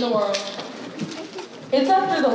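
A person's voice in the auditorium, sounding through the stage sound, with a pitch that glides down early on and no clear words. A second vocal phrase starts near the end.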